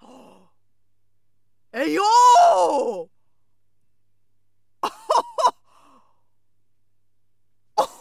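A woman's drawn-out exclamation of surprise, a long 'ooh' about a second long that rises and then falls in pitch, followed a few seconds later by three short breathy vocal bursts and more near the end.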